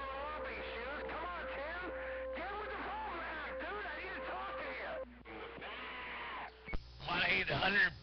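CB radio receiver putting out indistinct voice chatter over a steady tone for the first few seconds. Near the end a stronger transmission keys in suddenly and louder, a man's voice starting to speak.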